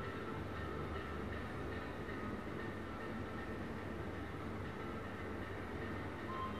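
A steady low rumble with a faint hum over it, unchanging throughout.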